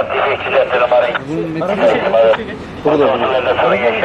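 Only speech: people talking at close range.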